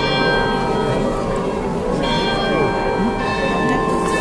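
Church bells ringing: several bells struck again and again, their tones ringing on and overlapping, with fresh strikes near the start, about two seconds in and just after three seconds. A crowd murmurs underneath.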